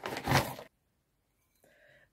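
Paper wrapping rustling and crinkling for about half a second as it is pulled off a small bowl.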